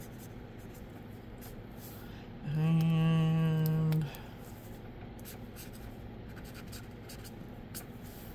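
Marker tip stroking across paper, faint light scratching as a name is written. About two and a half seconds in, a steady one-note hum from a person lasts about a second and a half.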